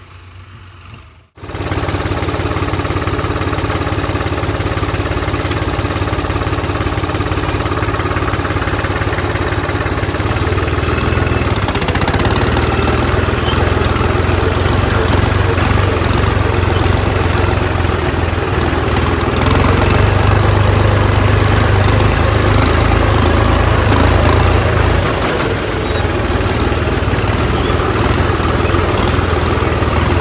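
New Holland tractor's diesel engine starting about a second and a half in, catching at once and running loud and steady. Its revs rise around eleven to twelve seconds in as the tractor gets under way, and it is loudest for a few seconds past the twenty-second mark.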